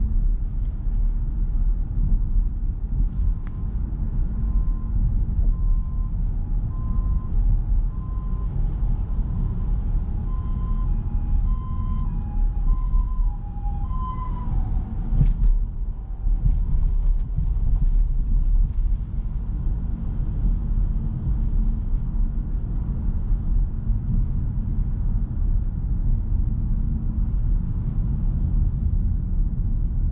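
Steady low road and drive rumble inside the cabin of a Nissan Note e-POWER AUTECH Crossover 4WD in town traffic. A faint two-tone hi-lo emergency-vehicle siren comes in a couple of seconds in, grows louder toward halfway, then fades, with a sharp click just after.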